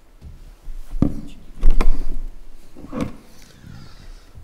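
Handheld microphone being handled and passed over: a few bumps and thuds with rumbling handling noise between them, loudest about a second and a half in.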